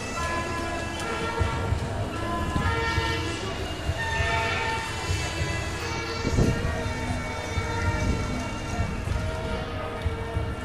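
Sustained horn-like tones, several pitches at once that shift now and then, sounding over the continuous noise of a parade crowd in the street, with a dull thump a little after six seconds in.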